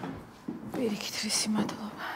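Quiet speech, partly whispered: a short hushed line of dialogue.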